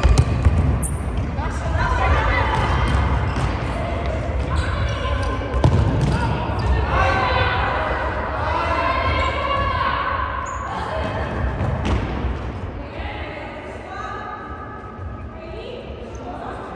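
Indoor futsal match: the ball thumps on the hard hall floor, with a couple of sharp kicks, while players' voices call out and echo around the large hall.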